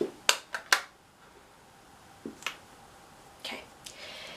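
Sharp clicks and taps of makeup containers being handled on a counter as one product is put away and the next picked up: three quick clicks in the first second, then a few fainter taps.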